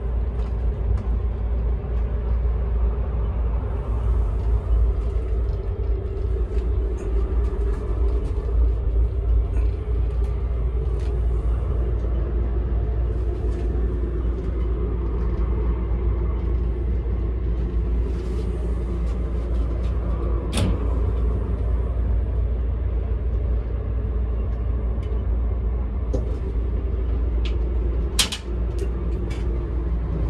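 Steady low rumble of a moving sleeper train heard from inside the compartment. A sharp click comes about two-thirds of the way through, and a quick cluster of clicks follows near the end.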